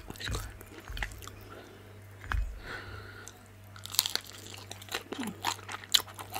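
Close-miked chewing and crunching of crisp pan-fried vegetable dumplings, with short sharp mouth clicks and a louder crunchy bite about four seconds in.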